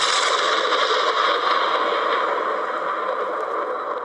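A steady rushing noise sound effect with no pitch or rhythm, starting suddenly just before and easing off slightly near the end.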